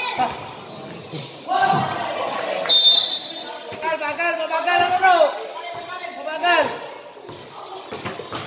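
Shouting from players and onlookers during a basketball game, with a basketball bouncing on the court as it is dribbled up the floor.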